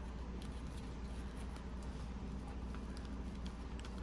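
Faint handling sounds of fingers pressing and shifting a doll's stiff pleather beret, a few light ticks and rustles over a steady low room hum.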